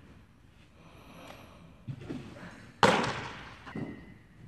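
A pitched fastball smacking into a catcher's leather mitt: a loud sharp pop near three seconds in with a short ring after it. A softer thud comes about a second before it, and another just before the end.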